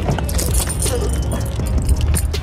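Close handling noise against the phone's microphone while walking: a clatter of small clicks and rattles over a low rumble, from a hand gripping a plastic water bottle next to the phone.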